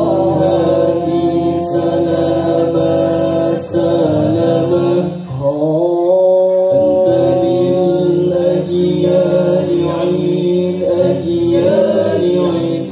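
Sholawat (Islamic devotional song) being sung in the Al-Banjari style, the voices drawing out long held notes that slide between pitches; the singing dips briefly about five seconds in.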